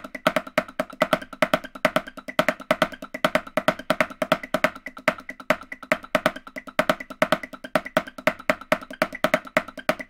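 Snare drum played with wooden sticks in a fast, even stream of strokes, about eight or nine a second: very soft ghosted notes with louder accents shouting out of them in a syncopated pattern, at 140 bpm.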